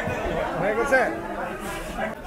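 Indistinct chatter of people talking in the background, with one voice briefly clearer about a second in.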